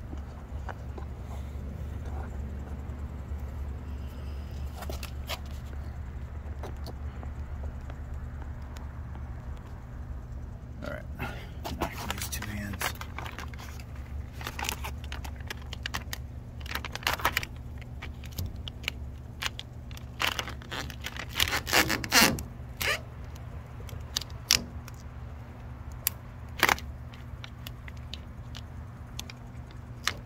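Clear plastic transfer film of a vinyl decal crinkling and rustling under fingers as it is smoothed and peeled on a van's body panel, in scattered crackles and rubs that get busier after about ten seconds. A steady low hum runs underneath.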